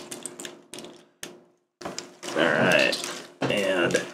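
Light clicks and taps of a plastic Transformers action figure's parts being handled, cut off by a brief dropout about a second in, followed by a voice.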